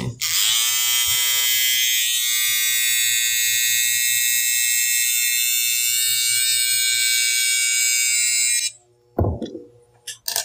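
Electric hair trimmer running with a steady high whine as it edges a hairline, then cut off abruptly near the end.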